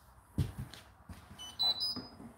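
Hotpoint washing machine sounding its end-of-cycle signal: a short series of electronic beeps stepping up in pitch near the end. A dull thump comes about half a second in.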